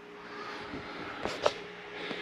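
Quiet interior room tone with a faint steady hum, broken by two light knocks about a second and a quarter and a second and a half in.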